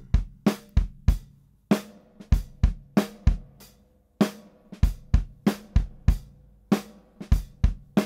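Recorded drum-kit groove of kick, snare and hi-hat playing back. It stops briefly about halfway through, then starts again with Echo Fix EF-X2 tape echo added to the snare.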